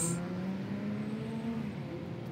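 Faint passing car on a city street: its engine note rises slowly as it accelerates, then fades a little before the end.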